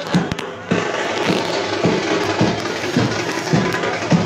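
Loud celebration noise of drums beating at an uneven pace over a noisy crowd-like wash, with a sharp crack just after the start.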